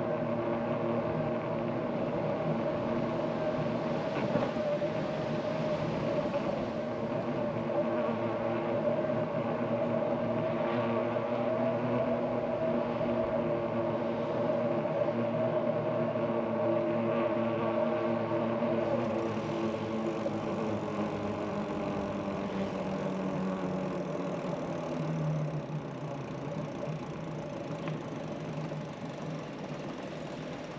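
A vehicle's steady mechanical drone, holding one pitch for most of the time, fading over the last few seconds.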